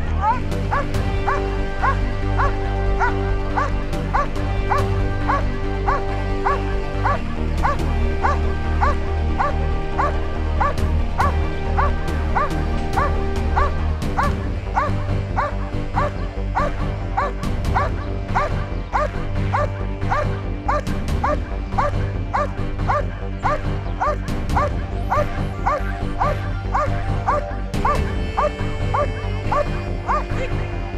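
German shepherd dog barking steadily and rhythmically, about two barks a second: the bark-and-hold, guarding the helper cornered in the blind. Background music runs under the barking.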